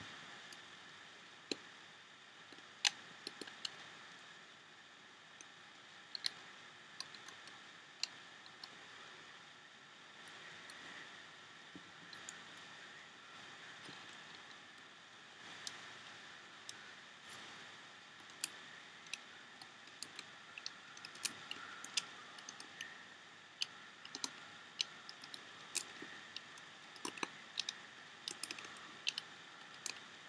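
Faint, scattered sharp clicks of a plastic hook tool and rubber bands against the plastic pegs of a Rainbow Loom as loose bands are placed. The clicks come more often in the last few seconds.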